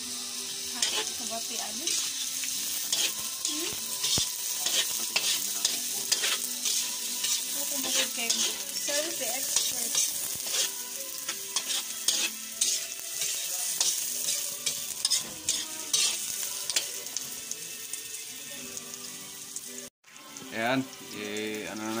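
Chopped onions and garlic sizzling in hot oil in a wok, with a spatula scraping and knocking against the pan again and again as they are stirred. The sound drops out for a moment near the end.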